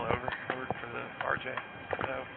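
Indistinct voices of people talking nearby, mixed with footsteps on concrete pavement, heard as short sharp clicks.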